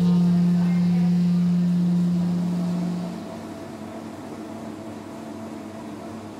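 A jazz saxophone holds a low final note that fades out about three seconds in, leaving only quiet, steady coffee-shop ambience.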